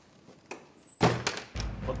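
Heavy wooden door being handled: a cluster of loud thuds about a second in, followed by a low rumble.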